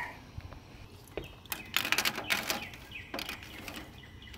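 A metal ladle clinking against a frying pan and a motorcycle roller chain's links rattling as the ladle fishes through hot oil for the chain's end, with a quick run of clicks about halfway through.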